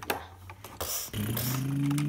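A person's voice holding a low, steady hum, a mouth-made machine noise, starting about a second in. Before it come a few faint clicks of plastic toy parts being handled.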